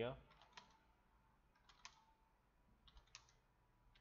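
Faint computer keyboard keystrokes in three small clusters of clicks, typing the Sabre 'MD' (move down) command to page through a list.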